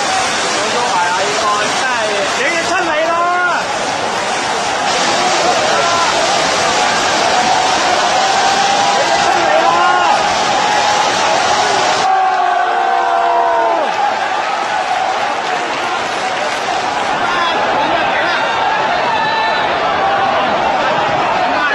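Crowd of protesters shouting over one another: many raised voices at once, with single yells standing out from the din.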